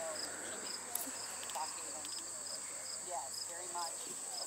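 Insects calling: a steady high-pitched buzz with a separate chirp pulsing about twice a second, under faint voices of people talking. A single short click about a second in.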